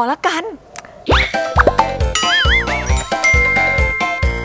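A cheerful children's channel intro jingle starts about a second in. It opens with a quick rising boing-like slide, then comes a pulsing bass beat, a wobbling whistle-like synth tone and a long held high note.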